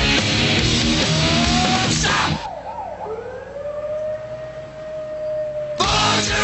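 Heavy rock band playing, then dropping out about two seconds in to leave a lone siren-like wailing tone: a few quick up-and-down swoops, then one tone that rises and holds. The full band crashes back in just before the end.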